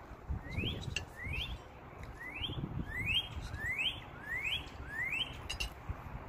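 Northern cardinal singing a series of about seven clear upslurred whistles, each note rising in pitch, repeated at an even pace of roughly one every three-quarters of a second.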